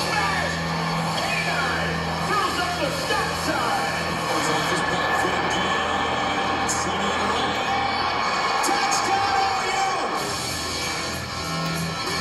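Football highlight film soundtrack played over loudspeakers: music with sustained bass notes mixed with a sports announcer's play-by-play voice.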